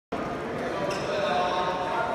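Badminton rally in a large hall: a racket strikes the shuttlecock sharply about a second in, over the steady chatter of voices from the surrounding courts.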